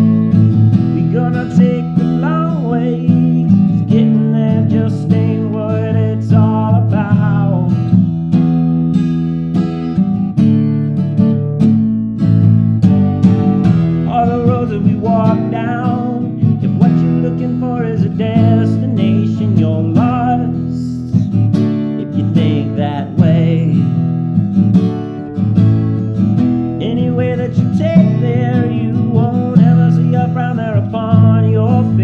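Instrumental passage of an indie folk song: acoustic guitar strummed steadily, with a melody line bending in pitch above the chords.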